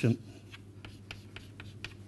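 Chalk on a chalkboard: a quick run of short strokes and taps as a row of hatching lines is drawn.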